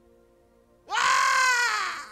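A man's high-pitched wailing scream, starting about a second in, rising sharply, wavering, then sliding down and fading: an acted-out cry of demons being cast out. A faint steady keyboard chord holds underneath.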